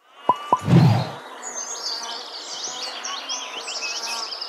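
Sound effects of a channel's title intro: two short high blips and a low whoosh in the first second, then a steady buzzing bed with rapid high chirps.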